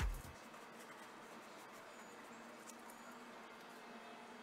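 Background music cutting off just after the start, then a faint steady hiss with a few faint ticks.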